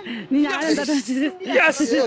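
Voices talking and calling out excitedly, with two short hissing sounds in the middle and near the end.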